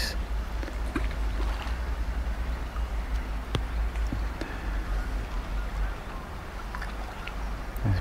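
Quiet outdoor ambience at a pond: a steady low rumble with a faint background haze, and a single light click about three and a half seconds in.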